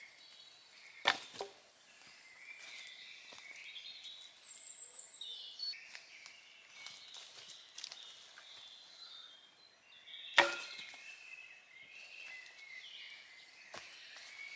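Two sharp knocks of a knife chopping into a piece of firewood, about nine seconds apart, the second the louder.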